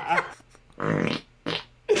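Two short farts: the first about a second in, the second shorter, half a second later.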